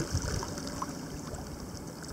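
Steady rush of fast-flowing Yukon River water running past a dock, with a few soft low bumps.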